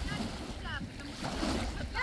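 Wind buffeting the microphone over small lake waves lapping at the shore, with a faint distant voice briefly under a second in.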